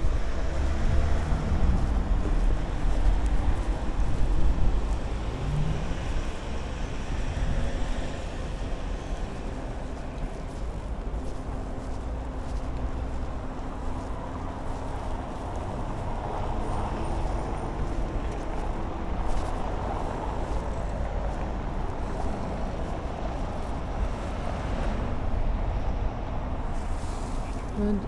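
Town-centre street traffic: cars passing, a steady low rumble that is loudest in the first few seconds.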